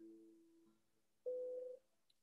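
Near silence in a pause between spoken phrases, broken by one brief, faint, steady tone lasting about half a second, a little past the middle.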